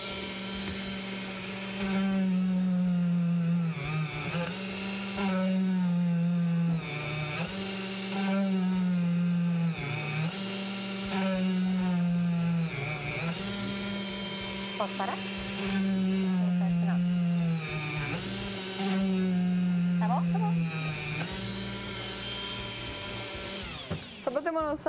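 Flex-shaft rotary tool (micro-grinder) running at high speed with a small drill bit, boring holes one after another in a plastic pipe. Its steady whine swells louder in repeated spells of about two seconds, dipping briefly between holes.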